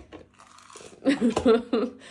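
Faint chewing of a bite of toasted sandwich, then a man laughs and exclaims "oh" about a second in.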